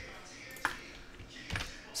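Two clicks at a computer over quiet room tone: a sharp click about two-thirds of a second in, then a duller, lower click-knock near the end.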